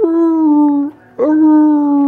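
A voice imitating dinosaur calls during toy play: two long, held howl-like cries, each just under a second, the pitch holding steady and sagging slightly at the end.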